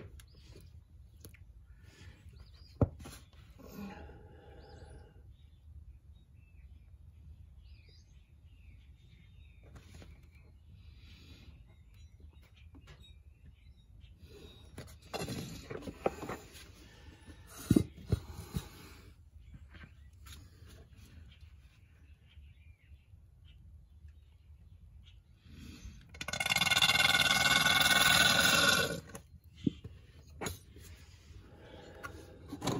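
Scattered clicks and knocks from handling a plastic gear-oil bottle at a scooter's gear-case fill hole. Near the end comes a loud, steady roaring sound that lasts about three seconds.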